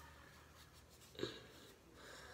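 Near silence: quiet room tone, with one brief soft sound just over a second in.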